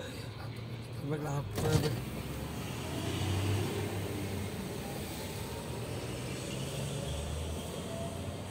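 Car running inside the cabin while it creeps forward in a queue: a steady low engine hum under road noise, with a short knock about one and a half seconds in.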